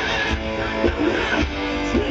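Live hard rock band playing loud: electric guitars through Marshall amp stacks over a steady drum beat, with several guitar notes bent up and down in pitch, heard from the crowd through the festival sound system.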